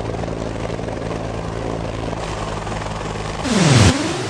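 Steady drone of a helicopter's rotor and engine. Near the end a loud swoosh with a falling pitch rises over it.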